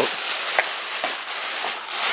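Clear plastic sheeting crinkling and rustling as it is grabbed, pulled and bunched up by hand: a steady crackly rustle with a few small clicks.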